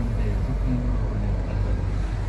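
Steady low drone of a Kia Sportage's idling engine heard inside the cabin, under a man's voice talking from the car radio.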